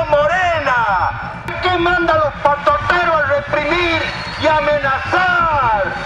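A man shouting through a megaphone in drawn-out calls, his amplified voice falling in pitch at the end of each call, over a steady low rumble.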